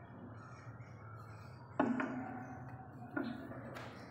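Two sharp knocks, each followed by a short ringing tone, the first a little under two seconds in and the second just past three seconds, with a brief click near the end.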